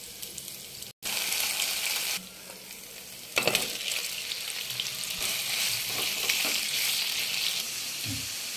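Oil sizzling in a hot nonstick frying pan of fried onions as a spoonful of paste goes in. Just after three seconds raw chicken pieces drop into the oil, setting off sudden, louder sizzling that keeps going, with stirring.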